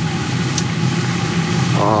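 Meat simmering in its own stock in a frying pan, bubbling and sizzling, over a steady low mechanical hum.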